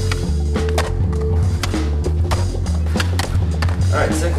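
Skateboard wheels rolling on concrete, with several sharp clicks and knocks from the board, over background music with a heavy, steady bass line.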